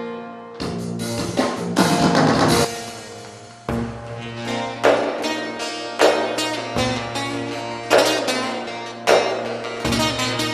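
Instrumental opening of a Turkish folk song (türkü) on a plucked string instrument, with hard strummed accents about once a second in the second half.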